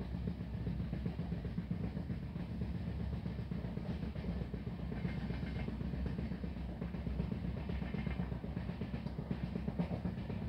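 Passenger train running at speed, heard from inside the carriage: a steady low rumble with fast, uneven rattling of the wheels and coach over the rails.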